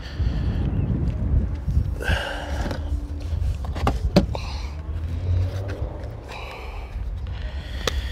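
Wind buffeting the microphone as an uneven low rumble, with a few sharp clicks and knocks of handling in the background.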